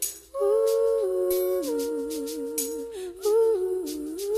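Music: wordless humming vocals in two-part harmony, holding and sliding between notes with a wavering passage mid-way, over light regular hi-hat ticks, with a brief break just after the start.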